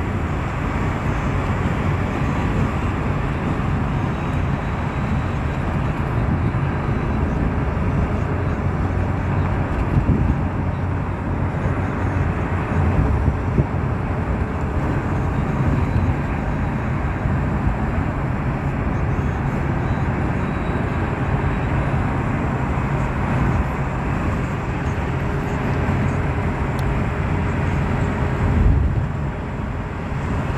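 Steady road noise of a moving car: a low tyre and engine rumble with no breaks, heard from inside the vehicle.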